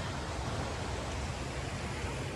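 Steady, even wash of ocean surf, with a low rumble underneath.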